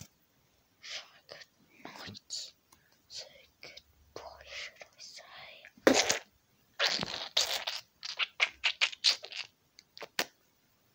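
A person whispering in short, breathy bursts, louder in the second half.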